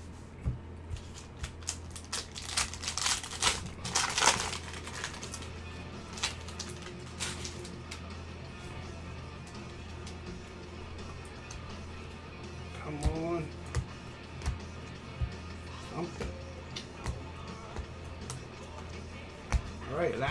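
Trading cards handled in gloved hands: a stack being fanned and flipped through, with a dense run of rustling and card clicks about two to four seconds in, then scattered single clicks as the cards are sorted.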